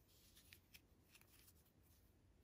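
Near silence, with a few faint soft ticks and rustles of a crochet hook working cotton-like yarn.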